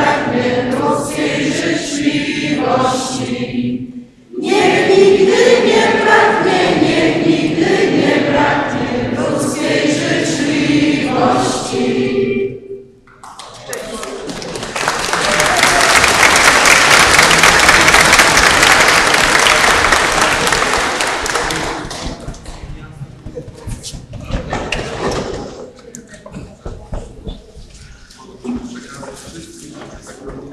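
A church congregation singing a wishing song together, with a short break about four seconds in; the singing stops about twelve seconds in. A couple of seconds later applause starts and runs for about eight seconds, then dies down into crowd murmur.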